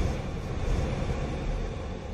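Deep rumbling sound effect dying away steadily, the tail of a boom in a logo sting.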